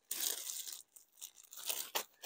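Clear plastic packaging bag crinkling and tearing as it is pulled open by hand: a longer rustle in the first second, then a pause and shorter crinkles near the end.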